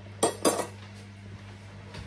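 Metal cutlery set down on a table: two sharp clinks in the first half second.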